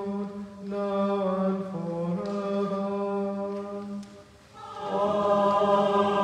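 Choir singing liturgical chant in long held notes, with a short breath pause about four seconds in before the singing resumes louder.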